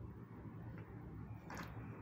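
Faint, steady low hum of the city heard through an open window, with a brief hiss about one and a half seconds in.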